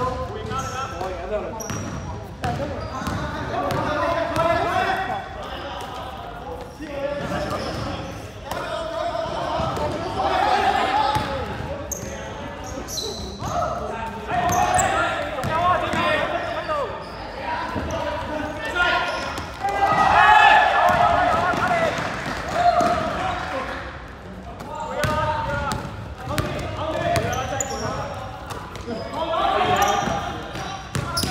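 A basketball bouncing and being dribbled on the court floor, with players' shouts echoing in a large sports hall.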